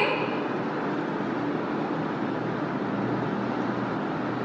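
Steady background noise: an even hiss with a faint low hum underneath, unchanging throughout, with no distinct events.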